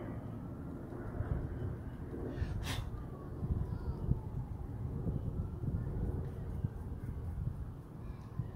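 Steady low outdoor rumble of street background, with a faint distant siren slowly falling in pitch. A brief hiss comes a little under three seconds in.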